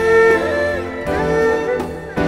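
Erhu playing a sliding, sustained melody over a string orchestra, in two phrases with a brief break near the end.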